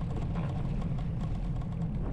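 Steady low rumble of a bicycle rolling over brick pavers, with wind buffeting the microphone.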